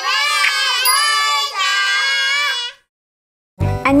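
A high child's voice singing a short channel-intro jingle in two phrases, with no accompaniment; it stops abruptly, and after about a second of silence, music with a beat comes in near the end.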